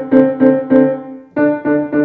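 C. Bechstein grand piano: one double note struck repeatedly, about four times a second, then after a short break a new double note repeated the same way. This is a double-note exercise in repeated notes, played with a stable hand.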